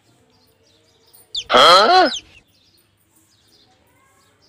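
A single short voiced call about a second and a half in, its pitch swooping down and then up, with little else around it.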